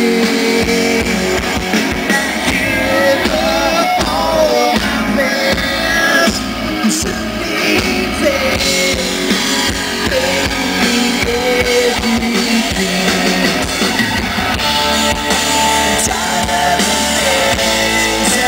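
Alternative rock band playing live through a PA: guitars, bass guitar and drum kit, with a male lead vocal sung into a handheld microphone.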